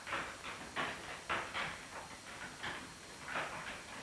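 Pegs being turned in a pegboard by hand: an irregular run of short light clacks and rattles, about two or three a second.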